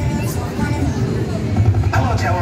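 Steady low rumble of a Fabbri Inversion XXL fairground ride's machinery as it runs, with music and voices over it.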